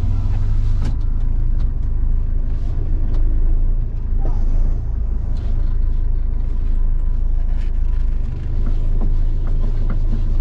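Mahindra Scorpio SUV's engine running as it rolls slowly, heard from inside the cabin: a steady low rumble with scattered light clicks.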